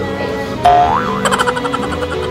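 Cartoon "boing" sound effect laid over background music: about half a second in, a tone holds briefly, slides up in pitch and then wobbles into a quick springy warble.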